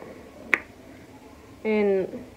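A single sharp click about half a second in, then a short burst of a woman's voice near the end.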